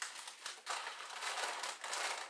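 Wrapped packages of frozen pork, in plastic freezer bags and an outer wrap, crinkling and rustling as they are shifted by hand inside a chest freezer.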